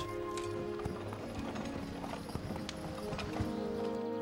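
Horse hooves clopping in an irregular series of knocks, over sustained background music.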